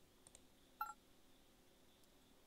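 A single short two-tone electronic beep, like a phone keypad tone, a little under a second in, over near silence. It is preceded by a couple of faint clicks.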